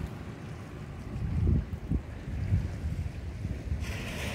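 Wind buffeting the microphone in uneven gusts, over the wash of waves on a pebble beach.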